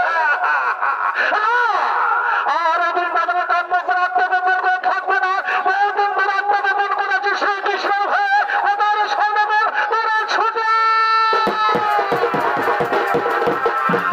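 Chhau dance music: a shehnai-type double-reed pipe plays a wavering, bending melody, holding a long note through the middle, over a steady beat of drum strokes.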